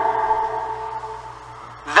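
A man's voice ringing on in a long, echoing tail after his last word, a few held pitches fading away over about a second and a half.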